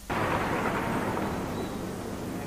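Arena crowd noise: an even hubbub from the audience that cuts in suddenly and fades a little.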